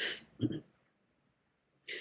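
A woman breathes in quickly, then makes a brief low throat sound about half a second in. She is quiet after that until another breath in near the end.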